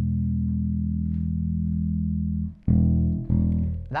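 Electric bass's open E string played through a Laney RB3 bass combo amp: one long ringing note that stops a little after halfway, then plucked twice more near the end. The bass control is turned up to a full tone that sounds pretty cool but not too bassy.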